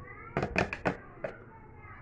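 A handful of sharp clicks and taps as a steel screwdriver tip knocks against the plastic jamb strip and track of an accordion door, with a faint high rising call at the very start.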